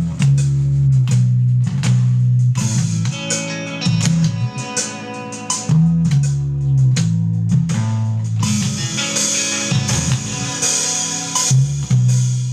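Progressive metal music led by a fretless electric bass playing held low notes, over a drum kit and guitars; the cymbals grow brighter about two-thirds of the way through.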